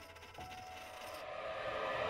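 A small metal disc spinning down on a flat surface: a fine, rapid rattle that stops about a second in. A sustained musical tone comes in about half a second in and slowly swells louder.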